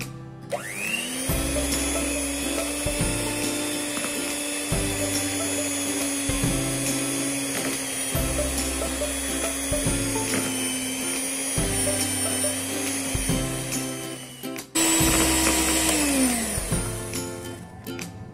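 An electric mixer's motor whines steadily as its wire beaters churn butter, grated cheese and egg yolk into a crumbly dough. It starts with a rising whine, cuts out briefly near the end, comes back higher-pitched, then winds down with falling pitch. Background music with a steady beat plays underneath.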